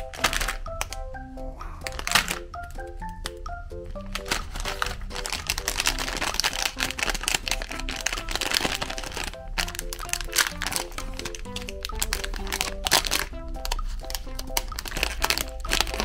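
Background music of short, bouncing notes over the crinkling of a foil-lined plastic ice cream wrapper being handled and torn open, the crackle loudest in the middle and again near the end.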